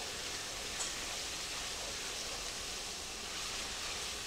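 Ground beef, butter and flour sizzling steadily in a skillet while being stirred with a wooden spoon: the flour is cooking into the fat to make the base of a gravy.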